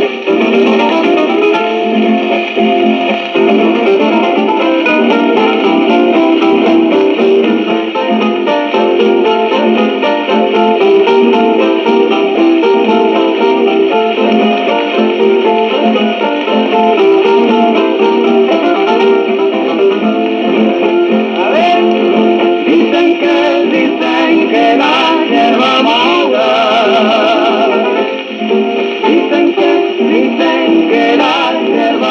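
Guitars playing the instrumental opening of a cueca, reproduced from a 1940s 78 rpm shellac record. The sound is thin, with no deep bass and little treble.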